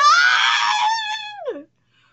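A woman's long, high-pitched squeal of excitement, the drawn-out cry of "oh my god". It holds high for over a second, then falls sharply in pitch before cutting off.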